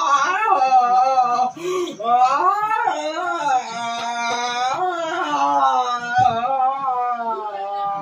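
A loud, high-pitched, wavering vocal sound close to the microphone. It runs almost unbroken, with brief breaks about a second and a half in and about six seconds in.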